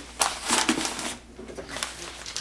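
Paper-wrapped packages of pork rustling and crinkling as they are handled and lifted out of a cardboard box, in several bursts over the first second.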